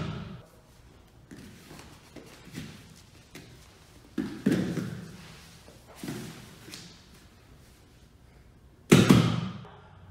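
Bodies thudding and shuffling on foam puzzle mats as two grapplers go through a takedown. There are several thumps, the loudest and sharpest near the end.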